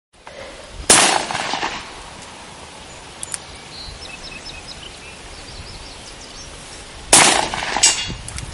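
Two handgun shots about six seconds apart, each with a short ringing echo. A smaller sharp clink comes just before the end, heard as a bullet striking the metal target.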